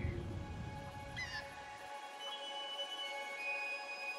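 Soft film score with long held notes, over a low ambient rumble that fades out just before the two-second mark; a short high bird-like chirp sounds just after one second.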